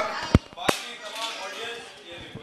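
Two sharp knocks about a third of a second apart, the first deeper and louder, followed by faint chatter.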